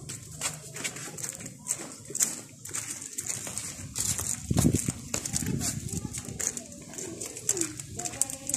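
Footsteps crunching on gravel, about two steps a second, with voices in the background.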